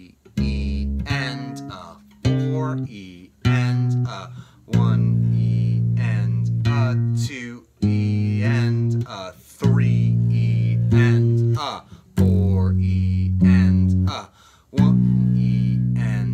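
Four-string electric bass playing a slow, syncopated line of octave notes, with some notes held for a second or two and short gaps between phrases.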